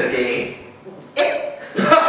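People talking, with a short, sharp high-pitched vocal sound a little over a second in, followed by a surprised "eh?" near the end.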